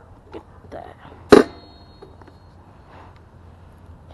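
A single sharp clack about a second and a half in, with a short metallic ring after it, over a low steady hum.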